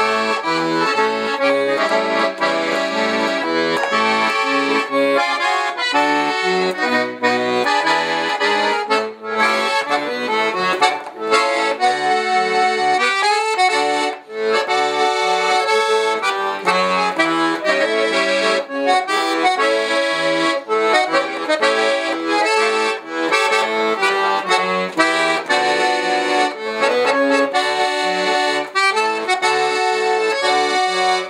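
Weltmeister piano accordion playing a tune: a melody over held chords that runs on continuously, with two brief breaks in the first half.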